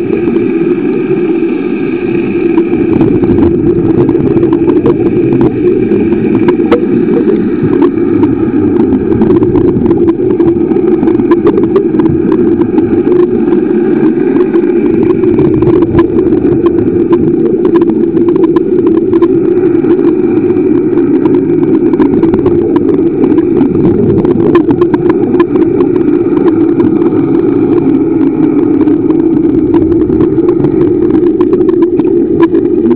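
Steady motor hum recorded underwater, with a constant crackle of small clicks over it.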